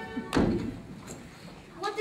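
A single dull thud about a third of a second in, with a short ringing tail, as string music fades out; a voice starts speaking near the end.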